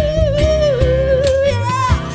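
Acoustic band playing: a woman sings one long held note that wavers slightly, then a short higher note near the end, over acoustic guitar, upright bass and cajón strokes.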